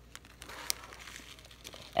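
Faint crinkling of plastic with one light click about two-thirds of a second in, from a bag of rhinestones being handled over a plastic diamond-painting tray.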